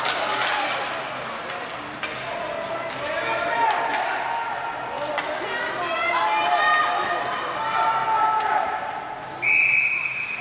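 Youth ice hockey play: high voices calling out across the rink, with sticks and puck clicking on the ice. Near the end a referee's whistle blows one short steady blast.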